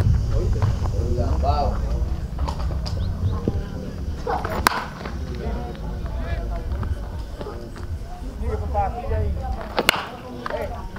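Baseball bat striking pitched balls in batting practice: two sharp cracks, one about halfway through and one near the end, with voices talking in the background.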